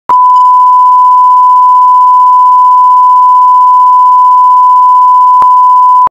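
Steady 1 kHz line-up test tone that plays with colour bars at the head of a video tape. It is loud and unbroken, with a short click about five and a half seconds in where the bars change.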